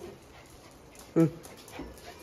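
A dog gives one short bark about a second in.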